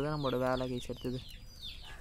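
A man talking for about the first second, then a short pause, with faint high chirps behind the voice.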